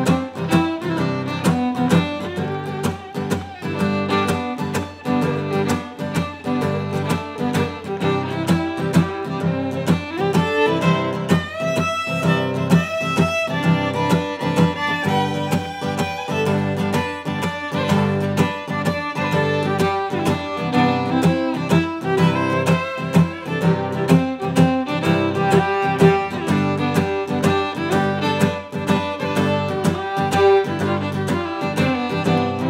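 Fiddle and acoustic guitar playing a waltz together, the fiddle carrying the melody over a steady strummed guitar rhythm. The guitar is played percussively, with chords choked off by the palm to keep a danceable beat.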